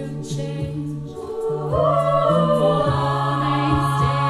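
All-female a cappella group singing: a held low bass note and sustained backing chords, punctuated by vocal-percussion hits, with a solo voice coming in louder about halfway through.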